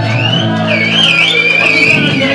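Live rock band with electric guitars and bass holding a loud chord that dies away in the second half, while a high wavering note rings above it as the song comes to an end.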